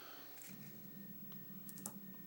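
Faint handling noises: a few light clicks and rustles as a foil-wrapped packet is drawn out of a small AK cleaning-kit tube with metal forceps.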